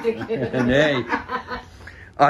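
A man speaking, with a short chuckle.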